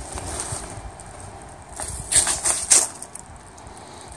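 Bubble wrap and cardboard packaging rustling and crinkling as they are handled and pulled back from a plastic sheet, with a few sharper crinkles about two seconds in.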